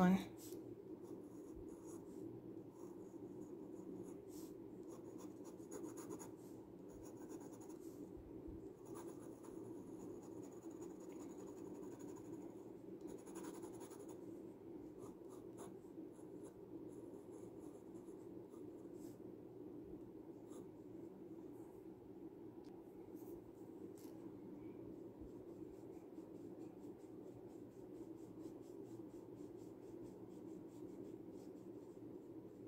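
Glass dip pen nib scratching lightly on paper as it writes and draws ink strokes, most of it in the first half. A steady low background hum runs underneath.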